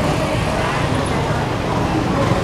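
Busy city street ambience: a steady rumble of road traffic with people's voices talking indistinctly in the background.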